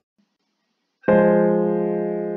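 Notation software's piano playback sounding a single four-part chord, the iv chord (B-flat minor) of a plagal cadence in F minor. It is struck about a second in, after a moment of silence, and rings on, slowly fading.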